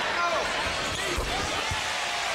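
Basketball arena crowd noise, a steady hubbub with a faint voice near the start and a few dull thumps scattered through it.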